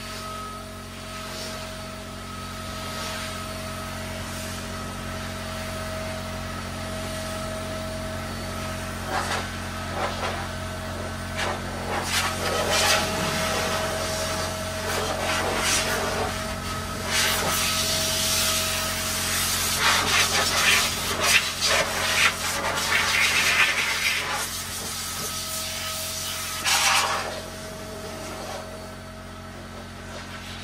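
Rubbing and scrubbing on surfaces during car detailing, over a steady low machine hum. The scrubbing comes in louder spells through the middle and later part.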